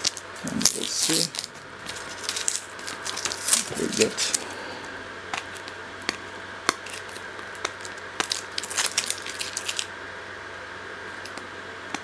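Masking tape being peeled off a sheet of acrylic by hand, giving irregular crackling tearing sounds. They are dense in the first few seconds and come again about nine seconds in, over a steady faint hum.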